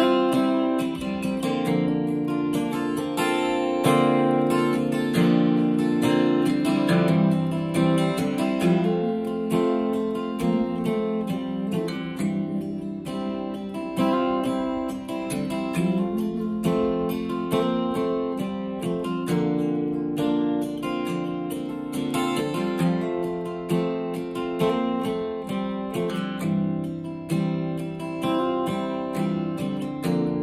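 Solo steel-string acoustic guitar played with a flatpick: a steady instrumental passage of picked notes and strums, with no singing over it.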